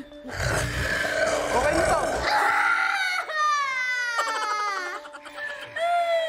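Edited game-show soundtrack: music under loud, noisy shouting for the first two seconds, then long wailing sounds that fall in pitch, repeated several times.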